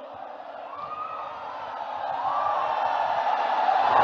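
Large crowd cheering and shouting, swelling steadily louder.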